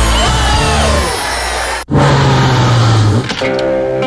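Advertising music from two back-to-back TV commercials. A jingle with gliding tones cuts off abruptly just under two seconds in. After it come a low held tone and then plucked guitar notes near the end.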